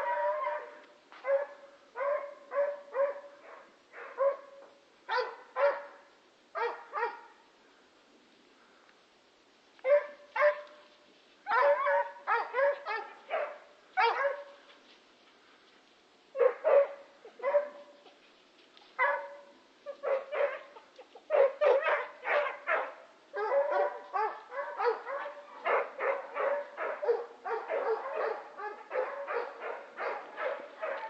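A dog barking over and over in runs of short, high-pitched barks and yips, with a few pauses of a second or two. Near the end the barks come thick and fast.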